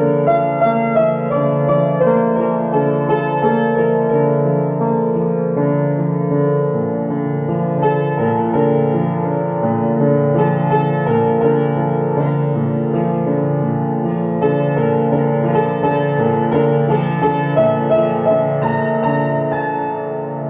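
Piano music with sustained chords and a steady run of notes.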